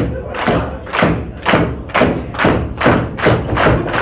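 Audience in a wrestling venue beating out a steady rhythm in time, about ten sharp beats at roughly two and a half a second.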